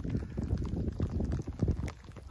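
Footsteps of a hiker walking a trail, with rustle and bumps from the handheld camera: irregular scuffs and thumps.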